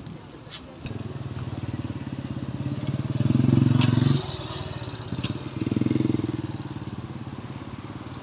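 A small motorcycle engine cuts in about a second in and runs with a fast, even throb, revving up twice, the first time louder. A sharp metal clink, like the aluminium steamer lid being set down, comes about four seconds in.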